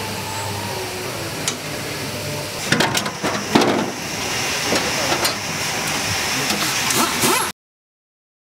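Steady hum of a large helicopter assembly hall, with scattered knocks and clanks as workers handle metal fuselage parts, several of them in quick succession about three seconds in. The sound cuts off suddenly near the end.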